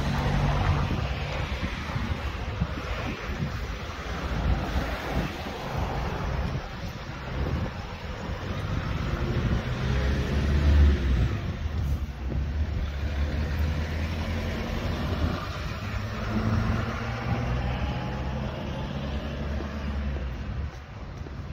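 Street ambience: wind buffeting the microphone over the hum of car traffic and engines. The rumble swells about halfway through.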